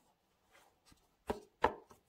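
Gloved hands handling a Nike Air Max Plus 3 sneaker, making short knocks and taps against its glossy plastic heel cage: a couple of faint taps, then two sharper knocks in quick succession in the second half.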